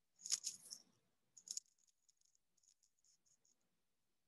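Faint rattling clatter in two short bursts, then a scatter of light clicks that die away about halfway through.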